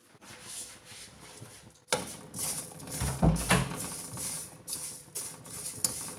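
Perforated steel spoon stirring sesame seeds as they dry-roast in an aluminium kadai: the seeds rustle and the spoon clicks and scrapes against the pan, with a sharp knock about two seconds in and a dull thud soon after.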